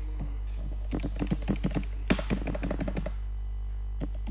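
Computer keyboard typing: a quick run of key clicks starting about a second in and lasting about two seconds. Underneath is a steady low electrical hum and a faint constant high-pitched whine.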